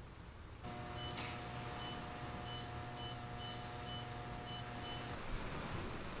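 Electronic kiln controller keypad beeping as buttons are pressed: about seven short high beeps at uneven intervals over a steady electrical hum. Hum and beeps both stop about a second before the end.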